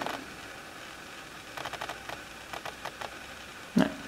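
Quiet room tone with a few faint, short clicks and light handling noises, in two small clusters in the middle.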